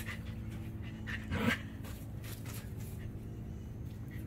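An animal panting, with one short whine about a second and a half in, over a steady low hum.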